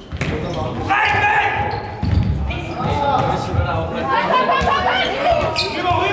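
A faustball being struck and thudding on a sports-hall floor a few times, with voices over it, in an echoing hall.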